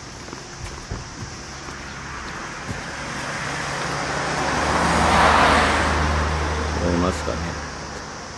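A car driving past on the road, its tyre and engine noise rising to a peak about five seconds in and then fading away.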